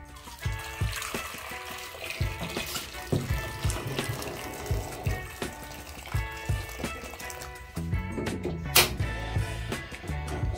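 A stream of hot water poured into a metal pot holding sweet potatoes, a steady filling splash that stops about eight seconds in, with background music throughout.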